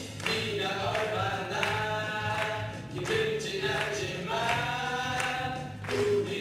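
A group of voices singing a song together over musical accompaniment, sung notes held and changing pitch every second or so.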